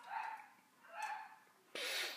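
Two faint dog barks, one near the start and one about a second later, followed by a short breath near the end.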